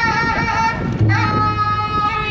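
Thai piphat ensemble playing: a reedy wind melody of long, slightly wavering held notes that change about once a second, with a deep drum tone entering about halfway through.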